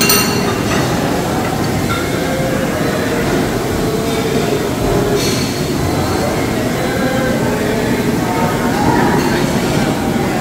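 Steady din of a busy buffet hall: a low, even rumble with indistinct murmuring voices underneath.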